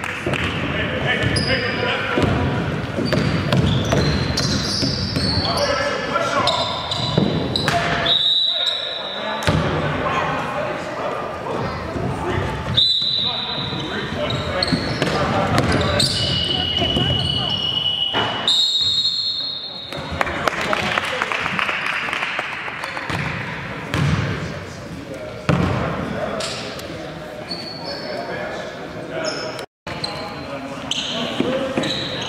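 Basketball game in a gym hall: a ball being dribbled on the wooden court, with short high sneaker squeaks and people talking and calling out through it.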